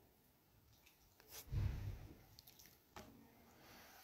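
Faint sounds from a person sitting close to the phone microphone between sentences: a brief soft low thump about a second and a half in, then a few small clicks.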